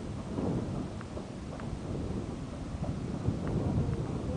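Low, uneven rumble of wind buffeting the microphone, with a few faint clicks.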